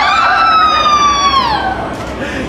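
A long, high-pitched scream, swooping up at the start, held with a slowly falling pitch, and dropping away about a second and a half in.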